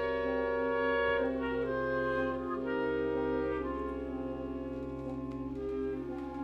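Wind ensemble playing a slow passage of sustained, overlapping chords that shift every second or so, with clarinet and brass tones, getting gradually softer toward the end.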